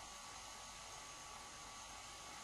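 Faint, steady hiss with a low hum: the recording's background noise, with no distinct sound event.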